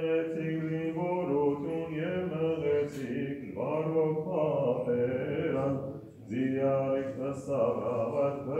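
Male voice chanting a hymn of the Armenian Apostolic morning office, with long held notes, briefly pausing about six seconds in before going on.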